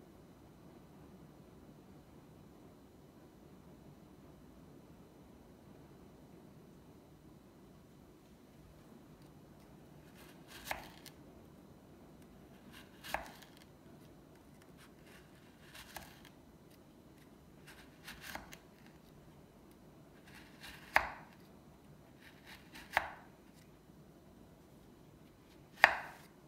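A knife chopping through a soft, crumbly bubble bar onto a wooden cutting board: about seven separate cuts a couple of seconds apart, beginning roughly ten seconds in, the later ones loudest. Before the first cut there is only a faint low hum.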